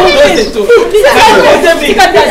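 Several people talking loudly over one another in a jostling crowd.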